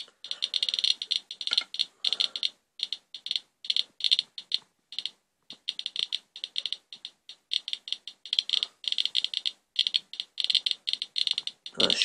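Radiation Alert Inspector EXP+ Geiger counter clicking rapidly and irregularly, in random clusters with short gaps, as its pancake probe counts a rainwater swipe. The count rate is over 700 counts per minute, many times the usual background of about 34.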